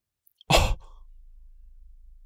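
A short, loud vocal sound about half a second in, lasting only a moment, followed by a faint low hum.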